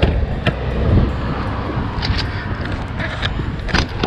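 Steady low rumble of road traffic, with a few sharp clicks from the RV's exterior compartment door latches being closed and opened by hand.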